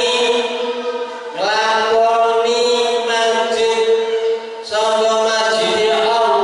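A man chanting a recitation into a microphone, in long, steadily held melodic notes. The chant runs in phrases, broken by short breaths about a second and a half in and again at about four and a half seconds.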